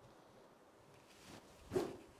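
A golf club held upside down, swung through once in the sword drill: a brief swish building to one short, sharp whoosh near the end as the grip end rushes through the bottom of the swing.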